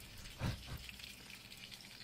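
Faint sizzling of steak, baked beans and chips frying in oil in a pan.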